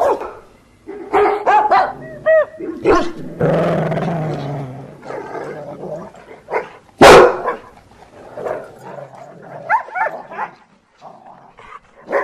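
Dogs barking and yipping in a run of short calls, some rising and falling in pitch, with a longer drawn-out call around four seconds in and one loud bark about seven seconds in.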